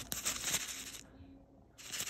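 A plastic food packet crinkling as it is handled, in two bursts of crisp rustling: the first lasts about a second, and the second starts near the end.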